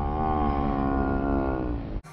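A person's voice holding one long, slightly wavering note that fades out near the end.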